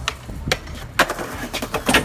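Skateboard hitting concrete in a run of sharp clacks, the loudest about a second in and a quick cluster near the end, as the board comes down from a handrail trick and rolls off without its rider: a missed landing.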